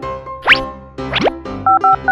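Children's background music with two quick springy cartoon sweeps, the first rising sharply in pitch. Near the end, a rapid run of short two-tone beeps like touch-tone dialing, as the toy telephone is dialed.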